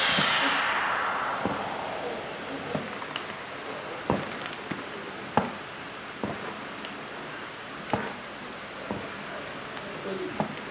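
A loud hiss fades away over the first two seconds, leaving a steady lower hiss. Short soft knocks come at uneven intervals through it, about one a second.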